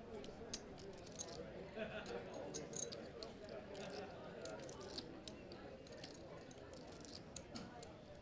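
Poker chips clicking at the table, many quick light clicks scattered throughout, over a low murmur of voices in the card room.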